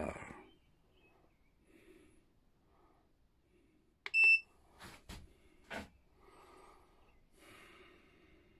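Stanley BC25BS smart battery charger giving one short, high beep as its Battery Voltage button is pressed, the charger acknowledging the voltage test. Two sharp knocks follow about a second apart.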